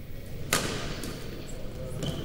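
A badminton racket strikes a shuttlecock once, about half a second in, with a sharp crack that echoes around a large gym hall. Low chatter carries on behind it.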